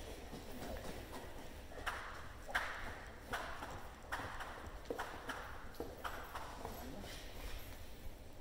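A dog tugging on a rag bite toy with a trainer on a rubber-matted floor: a run of short, sharp knocks and scuffs, a bit faster than one a second, from about two to six seconds in.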